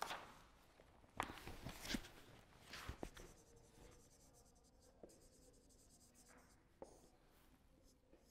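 Faint marker strokes on a whiteboard: a few short scratches in the first three seconds, then two single light taps.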